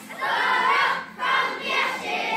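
A children's choir voicing a line of the song together, loud and all at once, with a brief dip about a second in.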